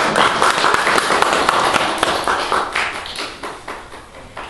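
A small audience clapping after a piano piece. The clapping is dense at first, then thins out, with only a few separate claps near the end.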